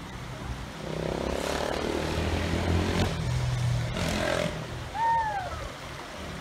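An engine passing by: its hum builds from about a second in, peaks, drops in pitch about three seconds in as it goes past, and fades away before the end.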